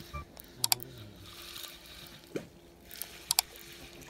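Two quick double clicks, one about a second in and one near the end, over a faint steady hum.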